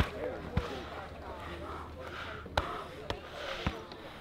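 About five sharp, separate thuds of blows landing, elbows and punches to the ribs of a fighter held on the ground, over faint voices of onlookers.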